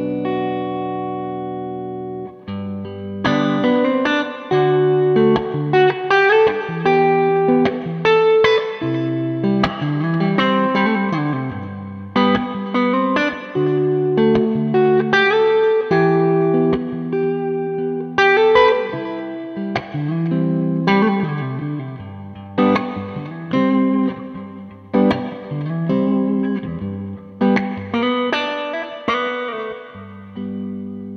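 Gibson Murphy Lab '56 Les Paul goldtop played clean on its neck P90 pickup through a Marshall Silver Jubilee amp: a chord ringing out for about two seconds, then a run of picked notes and chords.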